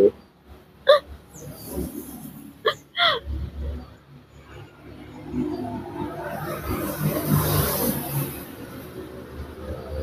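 A woman crying: three short sobbing catches of breath in the first few seconds. In the second half a motor vehicle's engine grows steadily louder.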